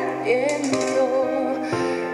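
A girl's solo voice singing a Spanish-language ballad with vibrato over a symphony orchestra's sustained chords; the orchestra moves to a new chord near the end.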